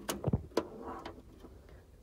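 SATA data and power cables being fed through a metal desktop PC case, their connectors knocking and clicking against the case a few times in the first half-second, then faint rustling as the cables are drawn through.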